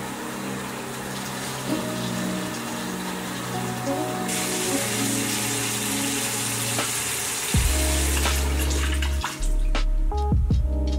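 Bathroom tap running into the sink during face washing, a steady hiss of water under background music; a heavy bass line comes into the music about three-quarters of the way through.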